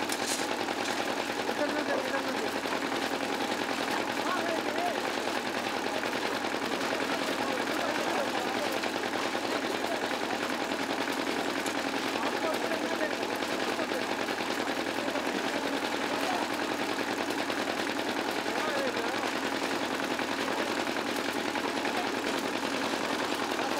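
Small stationary diesel engine of a concrete mixer running steadily, a fast, even chugging, with voices faintly behind it.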